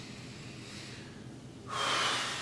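Soft breathing, then a small bell struck once near the end, its clear ringing tone sustaining as the meditation begins.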